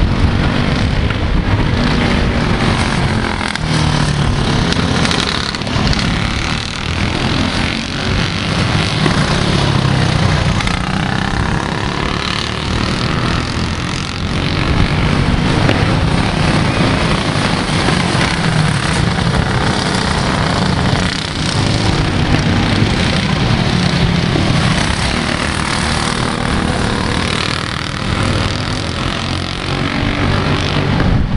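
Several racing go-kart engines running hard together, their pitch rising and falling as the karts accelerate and lift for the turns.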